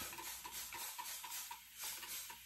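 Shaving brush working lather onto the face and neck: a soft, continuous scratchy swishing with faint quick repeating strokes.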